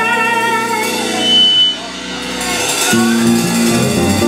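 Live blues band playing: a female singer holds a long note with vibrato over guitar, bass and keyboard, ending about a second in. The band then plays on more softly, with new chords coming in near the end.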